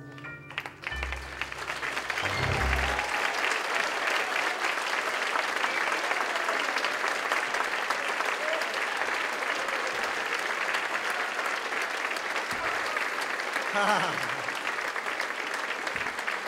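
Audience applauding steadily at the end of a song. A few closing low notes from the band sound in the first few seconds.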